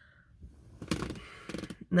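A pause between sentences filled with a person's soft breathing and mouth noises: a few quiet, hissy breaths, with the voice barely sounding before speech resumes.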